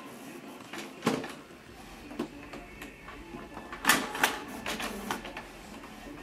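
Canon Pixma MG6120 inkjet printer printing a 4x6 photo: its paper-feed and print-head mechanism runs with a string of clicks and clunks, the loudest pair about four seconds in.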